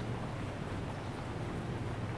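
Steady low hum with a faint even hiss: background room noise, with no distinct clicks or knocks.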